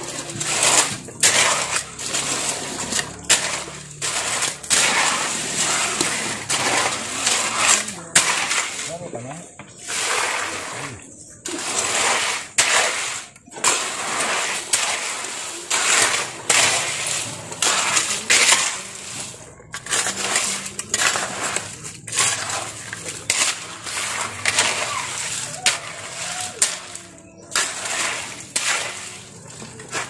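A metal hoe scraping and chopping through a heap of cement and gravel mix on the ground, in repeated gritty strokes about one a second.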